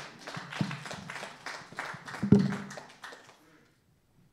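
Congregation clapping, with a couple of louder knocks, the loudest about two and a half seconds in; the clapping dies away after about three and a half seconds.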